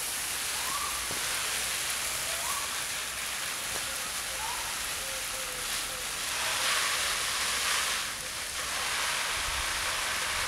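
Water showering from a watering rose onto leaves and soil: a steady hiss of falling drops, louder from about six and a half to eight seconds in.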